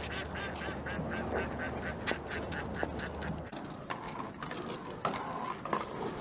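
Ducks quacking in a quick, even run of calls, about four a second, that ends about three seconds in. After that only quieter background noise remains.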